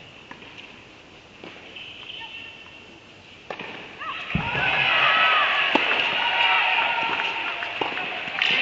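Tennis ball struck back and forth in a rally in an echoing indoor hall, a sharp pop every second or two. About four seconds in, loud shouting and cheering from many voices rises over the rally and stays up.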